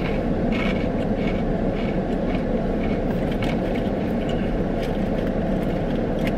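Steady low running noise inside a parked car's cabin, with faint irregular crunches of someone chewing crunchy coated dried peas.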